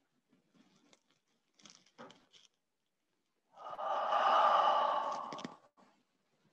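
A person breathing out audibly in one long exhale lasting about two seconds, starting a little past halfway through. It is preceded by a few faint rustles and clicks.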